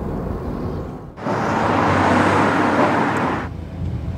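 Car cabin road noise: a low steady rumble from a moving car. From about a second in, a louder rushing noise rises abruptly and fades out after about two seconds.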